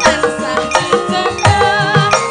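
Javanese gamelan music for wayang kulit: a sinden's female voice sings a wavering held line into a microphone, over ringing metallophone tones and low hand-drum strokes.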